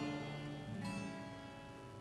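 Instrumental accompaniment in a pause between sung phrases: a chord at the start and another just under a second in, each ringing and fading away.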